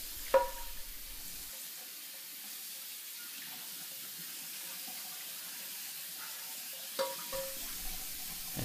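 Tap water running steadily into a cast iron skillet in a kitchen sink while a hand rubs the pan's surface to rinse it. A light knock comes about a third of a second in and another near the end.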